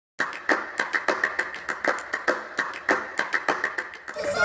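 A rapid series of sharp clicks or taps, about five a second, starting a moment after a brief silence.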